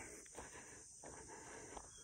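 Near silence: faint outdoor background with a steady high-pitched hiss.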